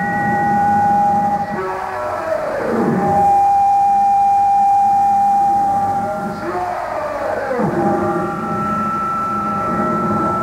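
Live power-electronics noise on a lo-fi cassette recording: held electronic drone tones, with two sweeps diving downward in pitch, about two seconds in and again about seven seconds in.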